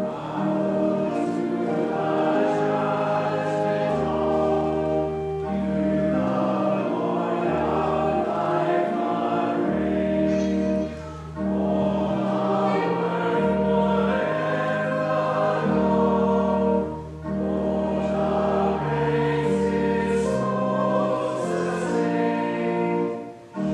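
A congregation sings a slow hymn with organ accompaniment, with the organ holding long, steady chords under the voices. The singing breaks off briefly twice, between lines.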